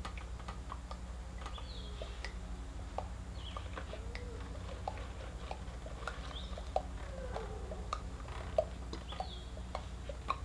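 Scattered small clicks and ticks over a steady low hum, with a few short bird chirps now and then.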